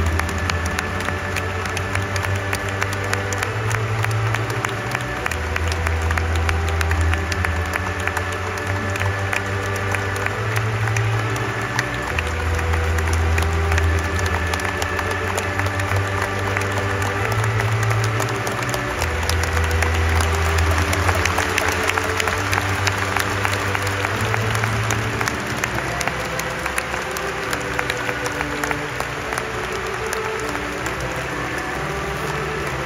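Stadium crowd applauding steadily, with music playing over it. The music has sustained tones and a low bass line that repeats every few seconds.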